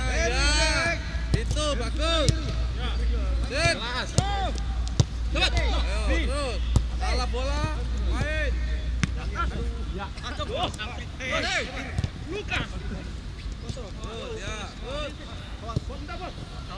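A football being kicked back and forth in a passing drill, giving sharp thuds of ball strikes every second or two, among frequent short shouted calls between players.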